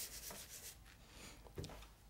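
A hand rubbing soft vine charcoal across paper to spread it evenly: a faint dry brushing that fades out within the first second, with a small tick about one and a half seconds in.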